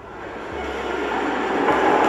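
A rushing noise that swells steadily louder, like something big approaching.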